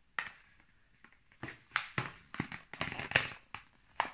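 A plastic-wrapped food tray pack handled and turned over in the hands: one click at the start, then a run of irregular sharp crinkles and clicks of the plastic from about a second and a half in.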